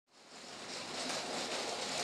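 A steady, even hiss that fades in over the first half-second, with no distinct tone or clicks.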